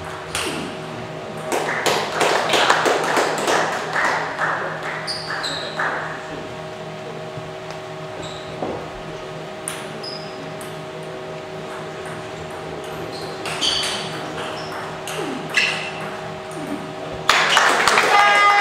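Table tennis ball clicking on the table and bats, a scatter of short sharp pings, busiest in the first few seconds, over a steady hum. Music comes in abruptly near the end.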